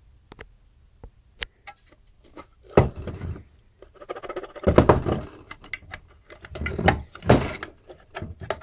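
Handling noise of a heavy aluminium module enclosure being picked up and turned over: a few light clicks, then irregular knocks and rubbing, with louder thuds about three, five and seven seconds in.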